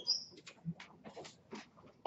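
People moving about a lecture room: scattered knocks and rustling, with a short high squeak near the start.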